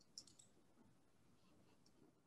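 Near silence: faint room tone with a few soft clicks in the first half second and one more near the end.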